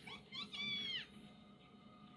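A cat meowing: two short, high chirps, then one longer high-pitched meow that drops in pitch as it ends, all within about the first second.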